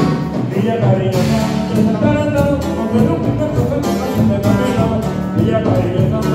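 Live band music from a Mexican banda with brass, playing a dance tune with a steady beat.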